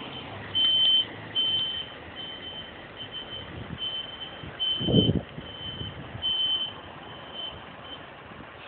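A single-deck bus's reversing alarm beeping steadily, a high beep about every three-quarters of a second, as the bus backs across the yard. A brief low rumble comes about five seconds in.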